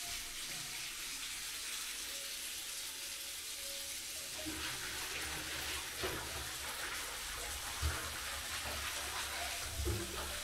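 Water running steadily into a bathtub from a handheld shower head as the tub fills. From about halfway through it sounds heavier and lower, with a couple of light knocks.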